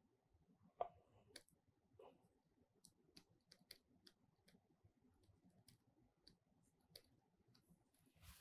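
Near silence with faint, irregular clicks and taps from a stylus writing on a pen tablet, one slightly louder just under a second in.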